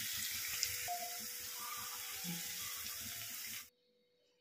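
Sliced onions frying in hot oil in a non-stick pan: a steady sizzle that stops abruptly near the end.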